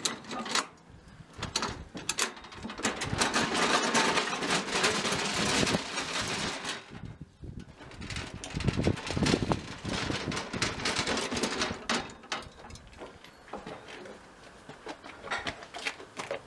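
Handling noises of a gas barbecue being set up: rustling, knocks and clatter, densest in the first few seconds and again around the middle, with a brief lull in between, then scattered knocks as the gas cylinder is moved.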